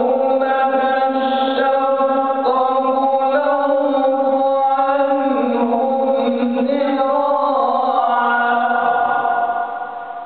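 A man's solo Quran recitation in a melodic chanted style, one long phrase sung on sustained notes with slow shifts in pitch, trailing off near the end.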